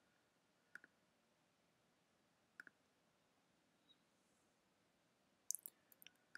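Faint computer mouse button clicks against near silence, picking mesh edges one at a time: a pair about a second in, another pair near the middle, and a quick run of clicks near the end.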